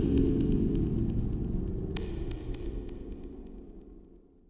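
Low droning tail of a logo-reveal soundtrack fading steadily away, with a few faint ticks and one sharper click about two seconds in.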